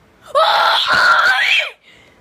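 A child screaming once, loudly, for about a second and a half, the pitch rising toward the end.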